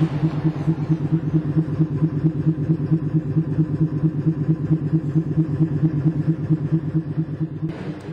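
A motor running steadily at constant pitch with a rapid, even throb several times a second, falling away near the end.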